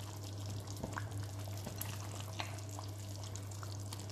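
Tomato fish soup simmering in a pot: scattered small pops and bubbling, with a few light clicks as mussels are set into the sauce, over a steady low hum.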